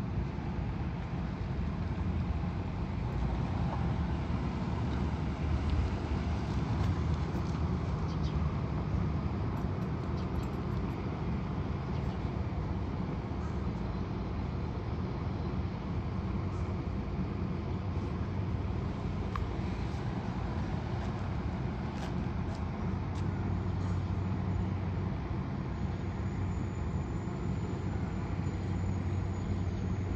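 Steady outdoor rumble of road traffic with a low hum that grows stronger over the last few seconds, and a faint thin high whine that comes in near the end.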